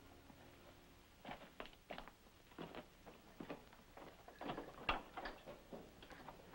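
Footsteps and scuffing movement on a rock floor: about ten soft, irregular knocks and scuffs over four seconds, starting about a second in, the loudest near the end.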